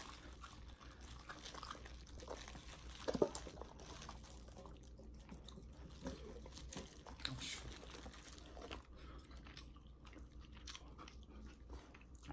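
Faint close-up eating sounds: soft chewing and small wet clicks from boiled chicken being pulled apart by hand, with one sharper click about three seconds in.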